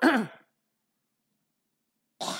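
An elderly man's short sighing exhalation into a close microphone, falling in pitch and lasting about half a second, then silence.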